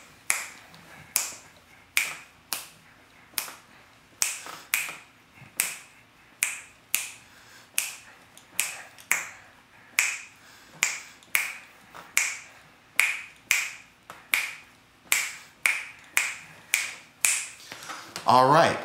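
Finger snaps keeping a steady beat, about two a second, with no singing or guitar over them.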